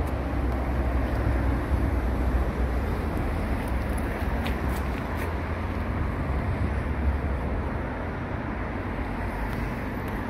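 Steady low rumble and hiss of road traffic, with no single event standing out.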